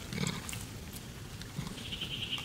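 A short low grunt from a long-tailed macaque about a quarter second in, over outdoor background noise.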